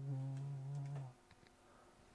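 A man's voice holding one steady, drawn-out note for about a second, then faint small clicks as the binoculars are handled.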